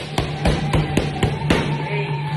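A quick flurry of about six boxing-glove punches smacking focus mitts, about four a second, over background music.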